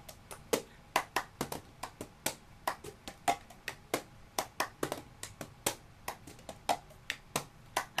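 Cup song rhythm played with hands and a cup on a wooden floor: a repeating pattern of sharp claps, taps on the cup and the cup knocked down on the floor, several hits a second.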